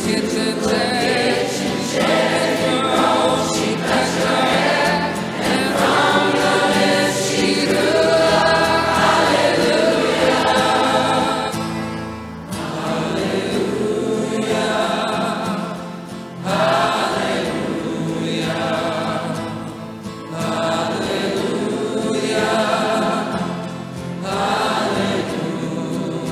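Background music: a choir singing sustained, wavering notes in phrases a few seconds long, with brief dips between them.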